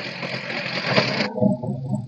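Cordless impact driver running against a seated self-drilling screw while a DeWalt Impact Clutch adapter slips, so only the adapter spins and the screw is not over-tightened and does not strip its hole or snap. A little over a second in, the sound turns lower and softer.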